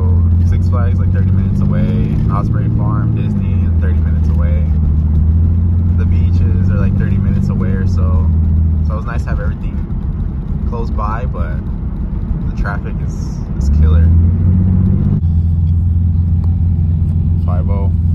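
Toyota 2JZ inline-six in a Jaguar XJ-S heard from inside the cabin while cruising: a steady low drone that eases off for a few seconds midway and then picks up again.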